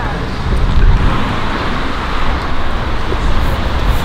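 Road traffic noise: a car going by, swelling about a second in and fading, over a low, uneven rumble.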